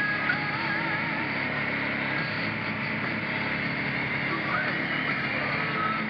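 ATV engine running under way on a gravel wash, its tone wavering as the throttle and speed change.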